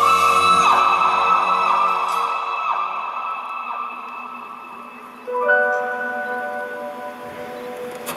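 Live pop-opera music: a male singer's long held high note trails off over the first few seconds as the backing fades away. About five seconds in, a new sustained chord comes in suddenly and slowly dies away.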